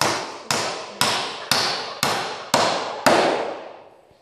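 Hammer blows on a wooden beam, a steady two strikes a second, each with a brief ringing decay; about seven blows, the last one about three seconds in.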